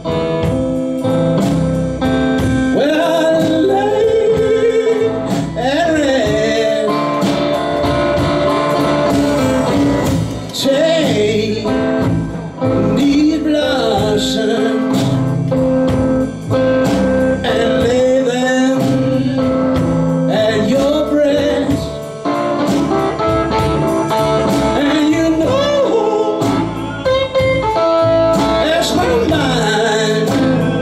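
Live blues trio playing: electric guitar, upright bass and drum kit together.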